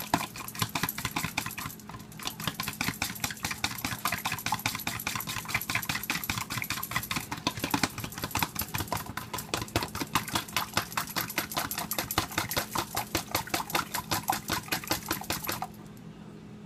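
Two eggs being beaten by hand in a small bowl, the utensil clicking against the bowl in a fast, steady rhythm of several strokes a second that stops just before the end.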